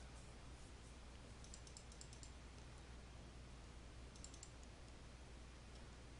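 Faint computer mouse clicks in two short clusters, several about one and a half to two seconds in and a few more around four seconds, over a steady low hum.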